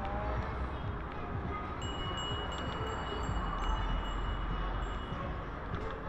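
Bicycle bell rung over and over, its ringing tone carrying for about three seconds from around two seconds in, over a constant low rumble of riding noise.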